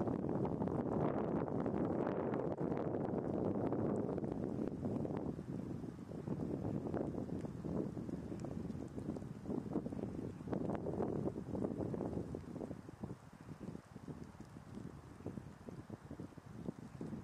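Wind buffeting the camera's microphone in gusts, a low rumbling rush that is strongest over the first five seconds, then comes and goes more weakly towards the end.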